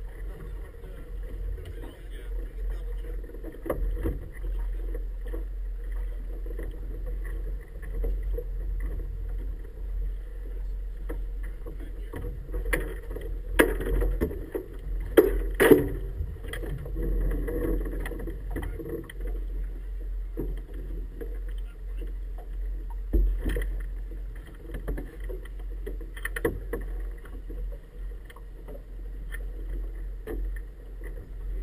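A small inflatable boat coming alongside a wooden marina dock to tie up, over a steady low rumble. A cluster of sharp knocks and thumps comes about halfway through, as the boat meets the dock and a crew member steps off, with a few more knocks later.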